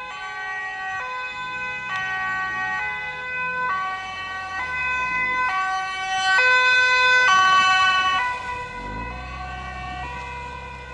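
Dutch ambulance's two-tone siren on an urgent A1 run, switching between a high and a low note about once a second. It is loudest as the ambulance passes close, from about six to eight seconds in, then fades as it moves off, with low vehicle engine and tyre noise rising near the end.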